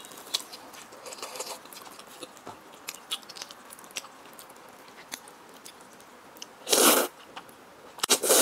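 Close-miked eating sounds: soft chewing with small wet mouth clicks, then near the end one loud, short slurp as a mouthful of sauce-coated instant noodles is sucked in.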